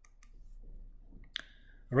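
A few faint clicks in a quiet pause, then one sharper click about a second and a half in, over a faint low steady hum.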